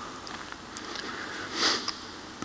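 A man's short sniff close to the microphone, about one and a half seconds in, over faint room tone, with a faint click a little before it.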